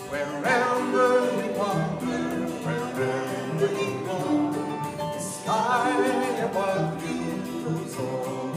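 Live acoustic folk band playing: acoustic guitar, harp and cello, with voices singing over them.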